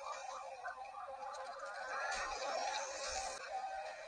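The Octonauts' Octo-alert alarm played in slow motion: a smeared, warbling wash of sound with a few rising glides about halfway through.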